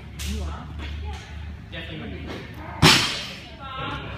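A barbell loaded with bumper plates dropped onto a lifting platform: one loud, sharp thud nearly three seconds in, with a short ringing tail.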